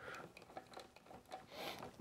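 Faint scattered small clicks and handling noise of hands working electrical wires and a green plastic wire nut in a plastic junction box.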